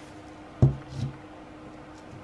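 Two short knocks on a table, the first louder, as a salt canister is set down after salting the food.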